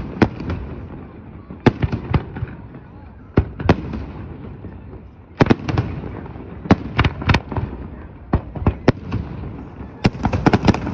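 Aerial fireworks shells bursting: sharp, irregular bangs and cracks coming in clusters every second or two, with low booming carrying on between them.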